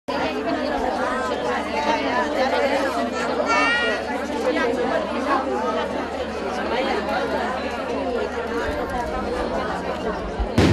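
Crowd chatter: many people talking at once in the street, with one higher voice rising above the rest about three and a half seconds in.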